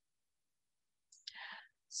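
Near silence, then about a second in a short, faint breath drawn in through the microphone just before speaking.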